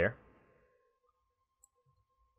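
A man says one short word, then quiet room tone with a faint steady high hum and a single faint computer mouse click near the end.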